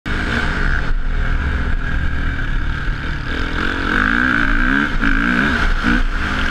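Motocross bike engine, heard on board from the rider's helmet, revving up and down as the bike is ridden along the dirt track. From about halfway through, its pitch rises and falls repeatedly.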